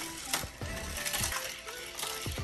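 Die-cast toy car rolling down a plastic spiral track, with clicking and rattling from the track and the garage tower's mechanism and a sharp click about a third of a second in. Background music plays underneath.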